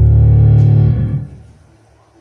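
Recorded music: a loud held chord of low bass and guitar that ends just over a second in and dies away, leaving a quiet room.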